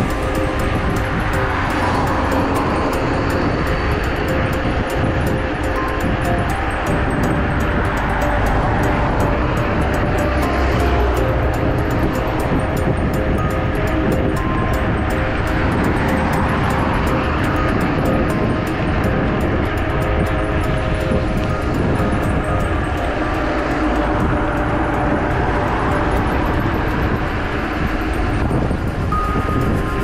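Steady rush of wind on the camera microphone and tyre noise from a bicycle riding along a road, with faint background music over it.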